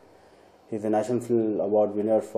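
A man speaking, resuming after a brief pause of under a second.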